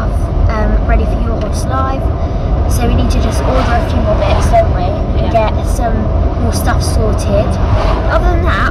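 Steady low road and engine rumble inside a moving car's cabin, with a girl talking over it.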